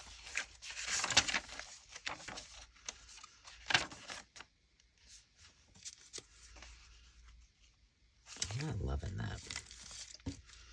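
Paper rustling and crackling as the pages of a handmade junk journal are handled and turned, with a few sharp clicks of paper in the first half. A short low murmur of a voice comes near the end.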